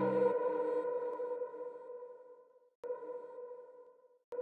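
Outro of an electronic dance track after the beat drops out: a single quiet synthesizer note, ping-like, rings and fades, then sounds once more about three seconds in and fades again.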